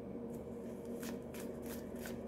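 A deck of tarot cards being shuffled by hand: a faint run of light, quick card-on-card flicks.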